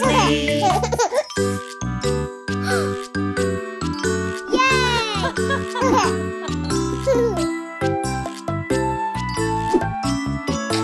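Gentle children's lullaby music with a chiming, tinkling melody over a soft bass, played between sung verses, with a young cartoon child's voice making short exclamations over it.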